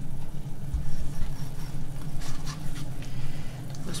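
Knife working into a whole trout on a plastic cutting board, with soft handling knocks about a second in, over a steady low hum.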